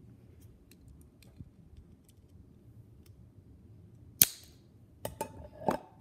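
Scissors cutting through a plastic mechanical pencil: faint handling ticks, then one sharp snap about four seconds in as the piece cuts off, followed by a few smaller clicks.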